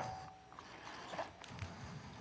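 Faint rustling and a few light taps of a small Bible being picked up and its pages leafed through, in a quiet room.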